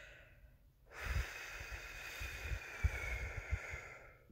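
A person's long breath out close to the microphone. It starts about a second in and runs for about three seconds as a steady hiss, with a few low bumps underneath.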